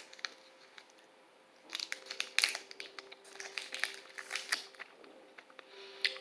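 Plastic chocolate-bar wrapper crinkling as it is opened: a run of small, quick crackles starting about a second and a half in.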